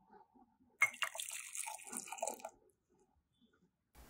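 Espresso poured from a small glass shot glass into a ceramic mug: a short trickle of liquid starting about a second in and lasting under two seconds.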